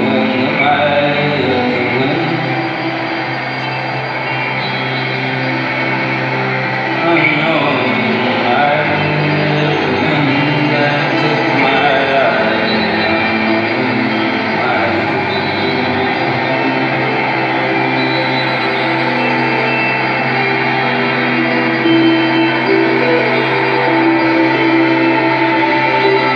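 Live band playing a slow instrumental passage: layered, sustained guitar and keyboard-like tones without vocals, heard from the audience in a concert hall.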